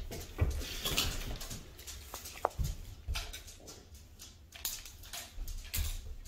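Soft rustling and handling of a fabric-wrapped plush toy being unrolled from its blanket, with scattered light taps, and a couple of brief faint squeaks a little over two seconds in.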